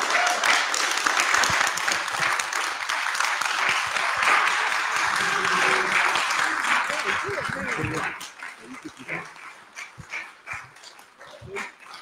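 Church congregation applauding, a dense patter of hand claps mixed with voices, that dies away about eight seconds in, leaving scattered voices.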